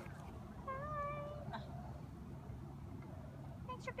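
A person's high, wavering call, about half a second long and about a second in, over a steady low background hum; speech starts near the end.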